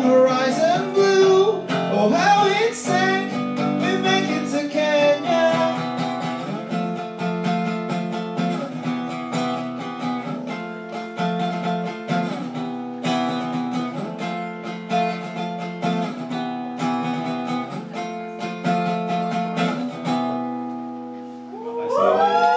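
Steel-string acoustic guitar strummed in chords as a live song ends, with a sung vocal line over the first few seconds. The guitar then plays alone, and its last chord fades out near the end.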